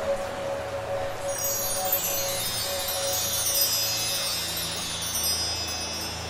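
Music: a shimmering cascade of many high chime tones, falling in pitch, comes in about a second in over a low held drone, while a held mid-range note fades away.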